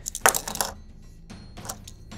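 A small plastic Micro Machines toy motorcycle is dropped and clatters onto the surface in a quick cluster of light knocks. A couple of fainter clicks follow about a second later.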